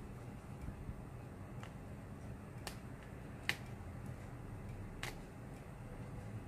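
Stitches being unpicked from a jacket seam by hand: four small sharp clicks of thread snapping, the loudest about halfway through, over a low steady hum.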